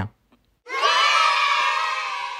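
A group of children cheering together in one held shout, starting suddenly about half a second in.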